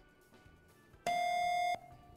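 A contestant's quiz buzzer sounds once, starting sharply about a second in: a steady electronic tone, about two-thirds of a second long, that cuts off suddenly.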